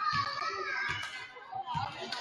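High-pitched voices of girls calling and shouting in a gymnasium, with a few soft low thuds.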